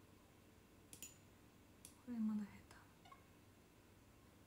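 A woman's single short, low cough about two seconds in, with a few faint, sparse clicks around it in an otherwise quiet room.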